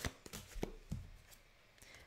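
Round oracle cards being handled and drawn from a small deck: a few faint card clicks and slides in the first second or so.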